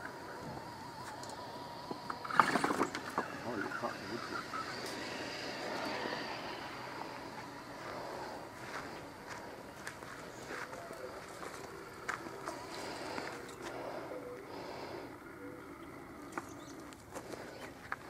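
Axial RC rock crawler's small electric motor whirring faintly as the truck crawls slowly over a wooden ramp track. A brief louder sound comes about two and a half seconds in, and faint voices murmur in the background.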